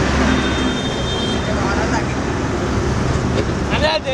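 Steady street noise: a low traffic rumble with voices in the background.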